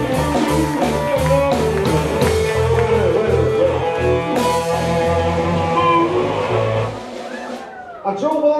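Live electric blues band playing a slow 12-bar blues in A minor: electric guitar lines over bass and drums. The bass and most of the band drop out about a second before the end, leaving the music quieter.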